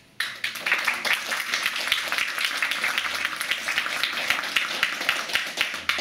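Audience applauding: many hands clapping, starting abruptly right at the outset and carrying on steadily, loud against the room.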